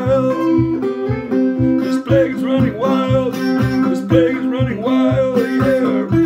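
Acoustic guitar strummed in a steady rhythm, about two and a half strokes a second, with a wavering melody line above the chords.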